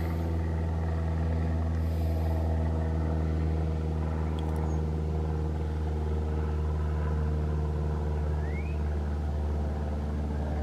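A vehicle engine idling steadily, a low even hum that holds one speed throughout.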